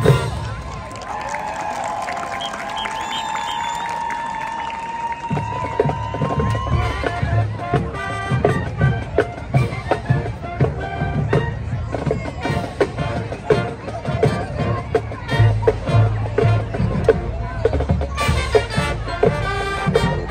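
Marching band: a held chord ends at the start, followed by about five seconds of cheering and yelling from the crowd. Then the drums and the band come in with a steady, beat-driven number.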